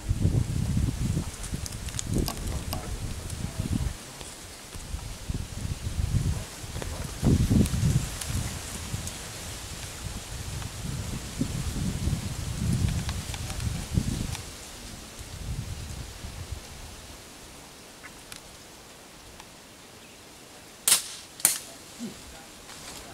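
Low, uneven rumbling of wind and handling on the microphone, fading after about two-thirds of the way through, then two sharp snaps of slingshot shots about half a second apart near the end.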